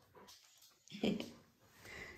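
Golden retriever making a brief whine about a second in, with a fainter sound near the end.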